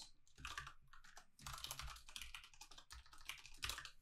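Faint typing on a computer keyboard: a quick, uneven run of keystrokes as code is entered.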